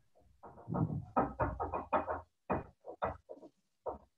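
An indistinct voice coming through a participant's open microphone on a video call, cut into short choppy fragments.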